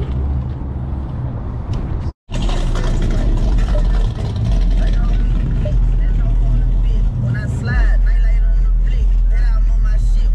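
Outdoor parking-lot din with a low engine hum, then after a sudden cut a car's engine and exhaust droning steadily, heard from inside the cabin as it pulls away, with voices in the background late on.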